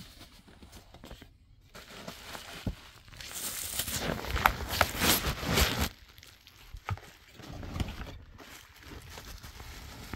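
Bubble wrap and packaging crinkling and rustling as a wrapped headlight is handled and lifted out of a foam-lined cardboard box, loudest around the middle, with small clicks and knocks.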